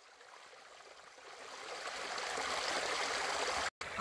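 Small mountain stream running over rocks in a low cascade. It fades in and grows louder over the first two seconds or so, then breaks off for a moment just before the end.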